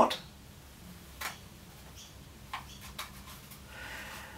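A string being fed through a short magic-wand tube and handled: a few faint, soft ticks and rustles, about three in all, over quiet room tone.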